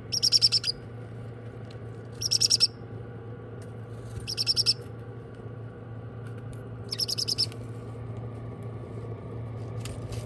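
Baby parrot chicks in a heated brooder chirping in four short bursts of rapid, high calls, each under a second long and about two seconds apart. A steady low hum runs underneath.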